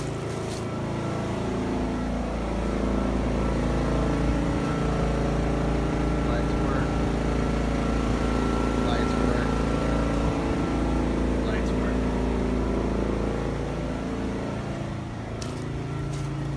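A motor running steadily, loud, growing louder toward the middle and fading again near the end.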